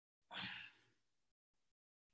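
A single short, soft human breath close to the microphone, about a third of a second in, lasting under half a second; otherwise near silence.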